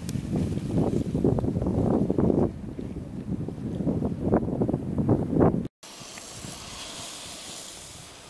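Wind buffeting an outdoor camera microphone: a loud, gusting rumble that cuts off abruptly about five and a half seconds in, followed by a quieter steady hiss.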